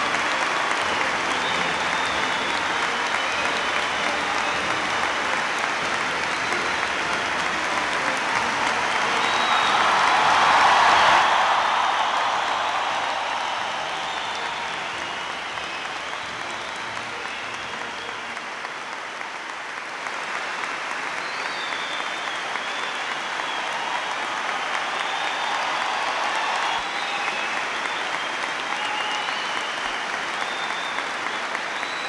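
Sustained applause from a large audience, swelling to its loudest about ten seconds in, easing off, then building again.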